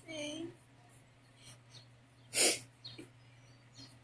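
A girl's short moan at the start, then about two and a half seconds in one sharp, noisy burst of breath from her.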